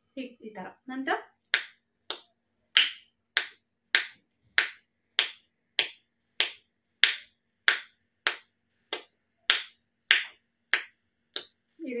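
A woman's rapid, forceful exhalations through the nose, a kapalbhati-style breathing exercise for a blocked nose and sinus: about seventeen short, sharp puffs of breath at an even pace of a little under two a second, each a brief hiss that dies away at once.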